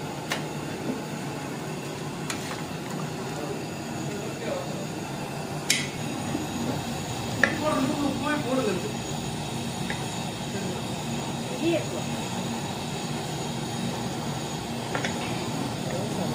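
A metal ladle stirs thick meat curry in a large aluminium pot and clinks against the pot's side a few times. A steady rumble runs underneath.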